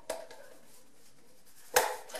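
Screwdriver being handled: a faint click just after the start and one sharp click near the end, with quiet room tone between.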